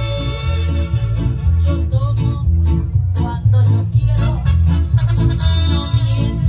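Music with a steady beat and a deep, prominent bass line, with pitched melody notes above.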